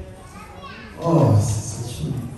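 A man speaking into a handheld microphone, loud from about a second in, with children's voices in the background during the quieter first second.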